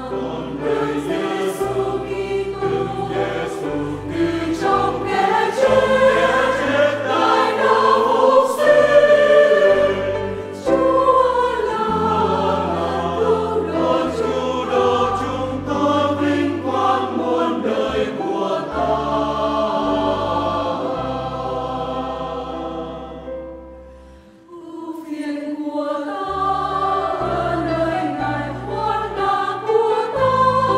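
Mixed church choir singing a Vietnamese Catholic hymn live, accompanied by piano and bass guitar. About three quarters of the way through, the music dies away almost to nothing and then the choir and instruments come back in.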